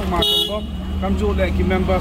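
A man speaking over steady street-traffic rumble, with one short vehicle horn toot near the start.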